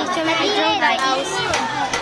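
Children's voices talking, with other children playing in the background.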